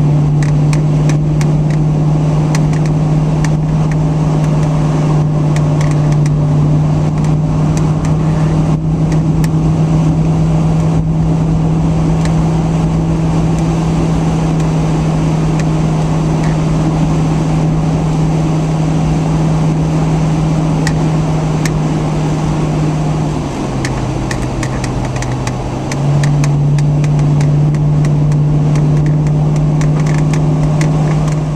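Car engine and road noise heard from inside a car moving at highway speed: a steady, loud drone. About 23 seconds in, the drone drops in pitch and loudness for a couple of seconds, as when the throttle is eased, then comes back up.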